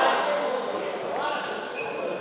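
Several young people's voices calling out in a large, echoing sports hall, fading after the start with a short rising call a little past halfway.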